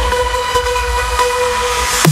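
Dubstep/EDM track in a breakdown: the heavy bass is cut out and a sustained synth chord holds steady.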